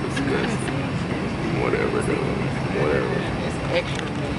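Indistinct passenger voices over the steady hum of an airliner cabin on the ground before takeoff.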